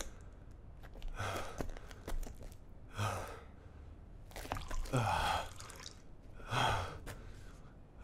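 A man's voice letting out several short breathy gasps or sighs, a second or two apart, each falling in pitch.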